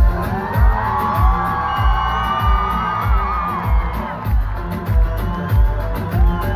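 Turkish pop played live through a concert PA, heard from within the audience, with a steady kick drum about twice a second. Many voices rise over the music in the first half.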